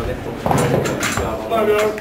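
People shouting without clear words while a lifter squats under a heavy barbell, the shouts starting about half a second in. A short knock comes right at the start.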